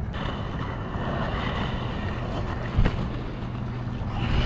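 Inline skate wheels rolling on concrete, a steady rushing noise mixed with wind on the microphone, with a single thump a little under three seconds in.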